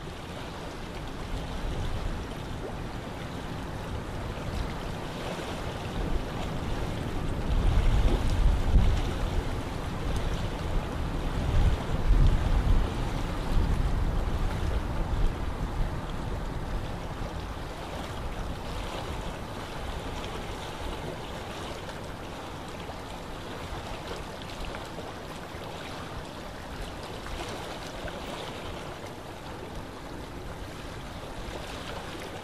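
Steady low rumbling noise on the microphone, swelling louder twice, about eight and twelve seconds in. Beneath it are faint keyboard clicks from typing.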